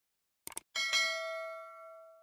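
Subscribe-button sound effect: two quick clicks about half a second in, then a bright notification-bell ding that rings on and fades away.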